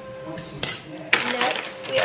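A metal fork clinks once, sharply, about half a second in, set down after stirring; then, from about a second in, the plastic bag of frozen butternut squash crinkles as it is picked up and handled.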